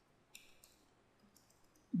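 A few faint, sharp clicks from a stylus on a drawing tablet while a diagram is drawn, the first and loudest about a third of a second in.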